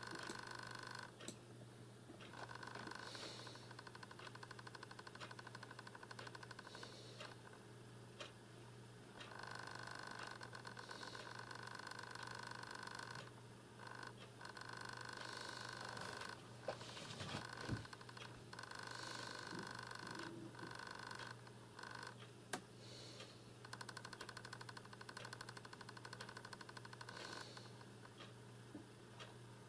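A faint, finely pulsing buzz that comes in stretches of two to four seconds with short gaps between, in a breathing-like rhythm, with a few soft clicks partway through.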